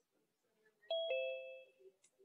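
Two-note descending chime, like a ding-dong: a higher tone about a second in, then a lower one a moment later, both ringing out and fading within a second.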